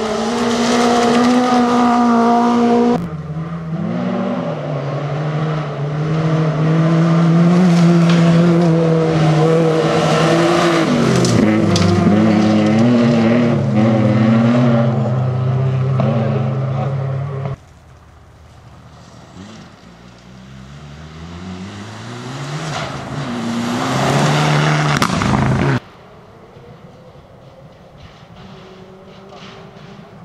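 Rally car engines at full throttle on gravel, revving hard and shifting gears, with pitch dipping under braking and climbing again as the cars pass. The sound comes in several cut-together passes, and the last few seconds drop to quiet background sound.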